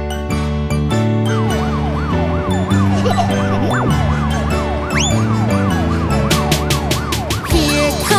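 Cartoon fire-truck siren effect, a quick wail rising and falling about twice a second, starting about a second and a half in, over an upbeat children's-song backing track. A short rising whistle sounds about halfway through.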